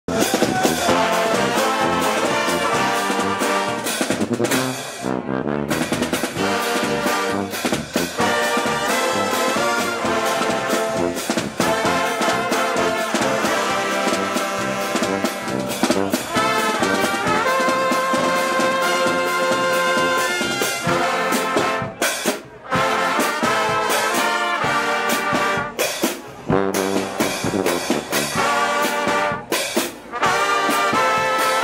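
Carnival brass band playing live: trombones and trumpets over bass drum and clash cymbals on a steady beat, with a few brief stops in the music.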